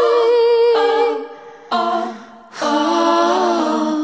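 A singer's voice from a song, singing long wordless 'oh' notes with almost no accompaniment: three held notes with short breaks between them, the last two lower than the first.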